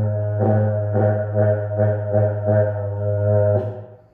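A large berrante, the Brazilian cattle horn, blown by a novice in one long low note that swells and dips about three times a second. The note fades and breaks off just before the end.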